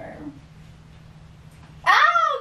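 A dog whining: the tail of one whine fades at the start, and a loud drawn-out whine begins near the end, rising and then falling in pitch.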